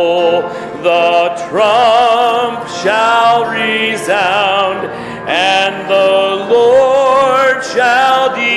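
A hymn sung by a standing congregation: long held notes with vibrato in phrases of a second or so, with brief breaths between them.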